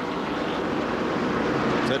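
Engines of a pack of NASCAR Whelen Modified race cars running at speed on the track, a steady blur of engine noise that grows slightly louder.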